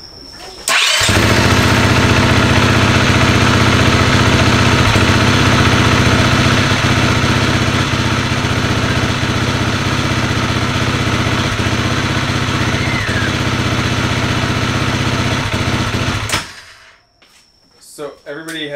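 2018 KTM 350 EXC-F's single-cylinder four-stroke engine starting, catching within a second and idling steadily, then dying suddenly about sixteen seconds in: the bike will not keep running at idle, the fault being chased.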